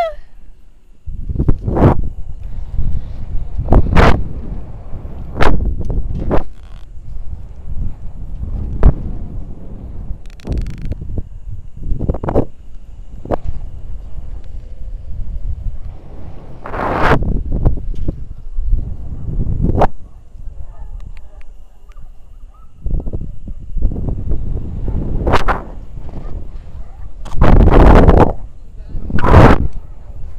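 Wind and rubbing buffeting the microphone of a body-worn action camera as a rope jumper hangs and swings on the rope: a string of irregular loud thumps and gusts, with a long loud burst near the end.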